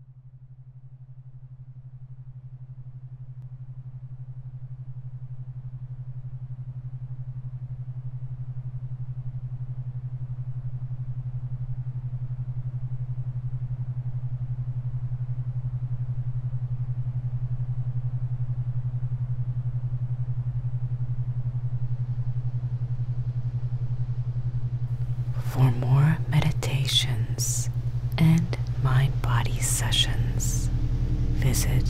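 Steady low binaural-beat drone for deep sleep, fading in over the first few seconds and then holding, with a faint airy hiss above it. Near the end a soft, whispery voice begins over the drone.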